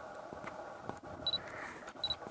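Faint steady hum with a few soft clicks and one short high-pitched beep past the middle.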